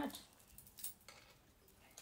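Faint clicks and rustles of a tarot card deck being handled and shuffled in the hands, with one sharper card click a little under a second in.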